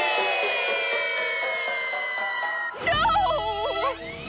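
Cartoon sound effects over the orchestral score: a long, steadily falling whistle as something is flung away, then, about three seconds in, a sudden loud wobbling, warbling tone.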